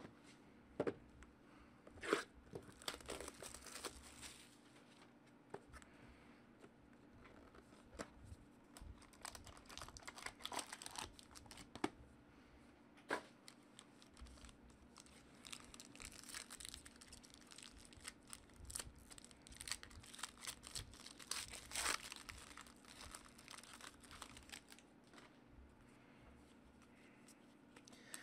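A trading card box and its foil-wrapped pack being torn open and handled: faint, intermittent tearing and crinkling of the wrapper, with light clicks and rustles of cardboard and cards, over a faint steady hum.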